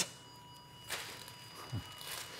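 Angiography X-ray system's exposure signal during a contrast run: a faint, steady high tone while the X-ray is on. A sharp click comes at the start and a brief hiss about a second in.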